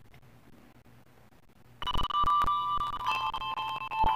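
Quiet room tone, then about two seconds in a small handbell ensemble starts playing: several bell notes struck together and left ringing, overlapping as new notes come in.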